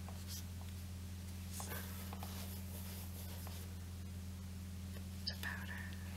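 Fingers and fingernails handling a plastic powder compact: soft scattered clicks and light taps on its case and lid, the sharpest near the end. Under them runs a steady electrical hum and hiss from the camera's built-in microphone.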